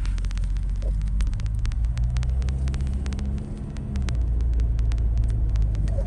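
Low rumble of a car driving, heard inside the cabin: engine and road noise, with a low engine hum that dips briefly about three and a half seconds in, and scattered faint clicks over it.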